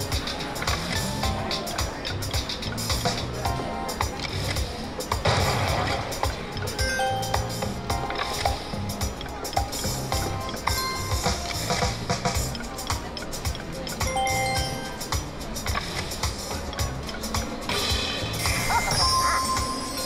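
Video slot machine playing its electronic reel-spin music and short chime tones as the reels spin and stop, over busy casino background noise.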